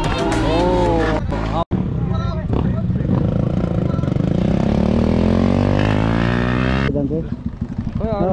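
Background music with singing, cut off abruptly about a second and a half in. Then motorcycle engines running as bikes ride along the road, a steady engine note slowly climbing in pitch, with voices taking over near the end.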